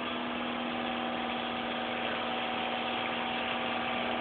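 An engine idling with a steady, unchanging hum and a constant low tone, heard from inside a vehicle cabin.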